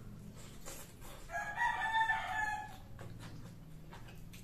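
A rooster crows once in the background, a single pitched call of about a second and a half starting just over a second in, over faint chewing clicks and a low steady hum.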